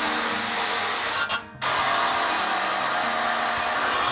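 Cordless impact driver driving screws through an aluminum post's base plate into the deck, in two runs: one of just over a second, then after a brief stop, a longer steady run of about two and a half seconds.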